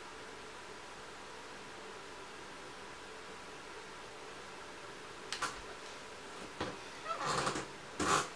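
Faint steady hiss of room tone, broken near the end by a light click and a couple of brief rustles.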